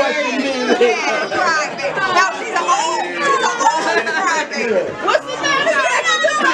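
A crowd of people talking at once, many voices overlapping in a steady chatter.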